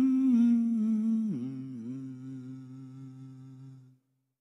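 The end of a song: a held, hummed vocal note that glides down about a second in, with a lower note beneath it. It fades out to nothing just before the end.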